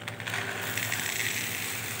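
Dried split lentils pouring from a plastic bag into a steel measuring tin: a dense rattle of grains striking and piling in the metal, starting just after the beginning.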